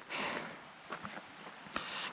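Footsteps on a gravel forest track: a short soft hiss at the start, then a few faint, scattered steps.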